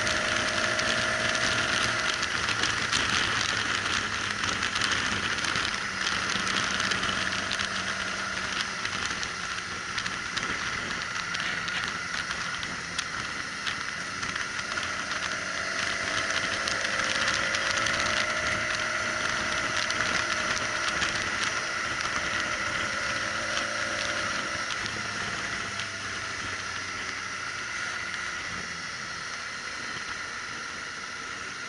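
Motorcycle on the move, heard from its own onboard camera: a steady rush of wind and road noise over a faint engine note that rises and falls gently with the throttle.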